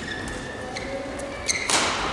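Badminton singles rally: short high squeaks of court shoes on the mat, then a sharp racket strike on the shuttlecock near the end.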